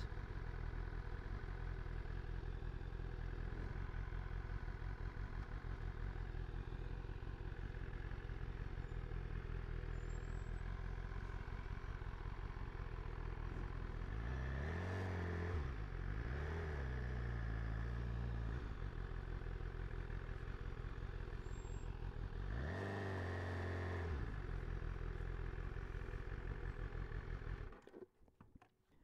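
BMW S1000RR inline-four engine running steadily at low speed, with two brief rises and falls in engine pitch, one about halfway through and one later on. The engine sound stops abruptly just before the end.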